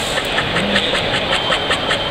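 Pocket knife blade stropped in quick back-and-forth strokes along a strop paddle, about five short swipes a second, to finish the edge after sharpening. Steady background noise of a busy hall with distant voices underneath.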